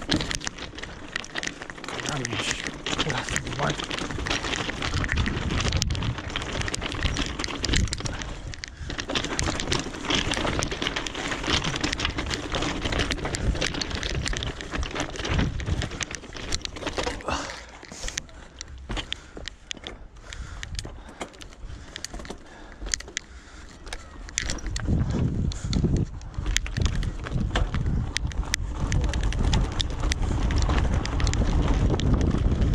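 Mountain bike rolling over loose railway ballast stones: tyres crunching on the gravel and the bike rattling continuously. Wind buffets the helmet-camera microphone near the end.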